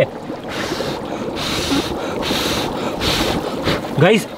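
Dry ice boiling in an air cooler's water tank: a steady rushing, seething hiss that swells in several surges.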